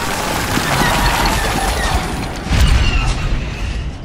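Film battle sound effects: a dense din of explosions and blaster fire, with a heavy boom about two and a half seconds in.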